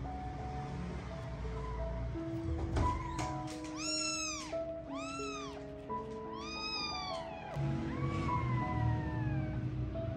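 Newborn kittens mewing while nursing: three short high mews that rise and fall, about a second apart in the middle, then a longer mew that slides downward near the end, over soft background music.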